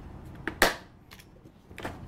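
Latches of a clear plastic tackle box being unclipped: one sharp, loud plastic snap about half a second in, followed by a few fainter clicks.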